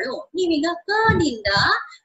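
A woman's voice speaking in four or five short, drawn-out syllables with brief pauses between them.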